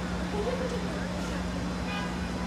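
Cadillac Escalade idling at the curb, a steady low hum, with faint crowd voices over it.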